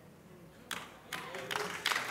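Audience in a hall: almost silent at first, then faint applause from the congregation starting about a second in and building toward the end.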